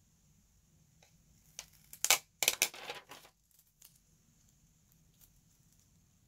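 Paper sticker being peeled from its backing sheet: a sharp tick about two seconds in, then about a second of crinkly paper rustle, with a few faint ticks of handling around it.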